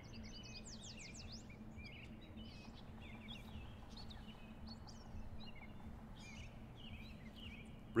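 Songbirds chirping and calling faintly, with a quick run of descending notes about a second in, over a low steady hum.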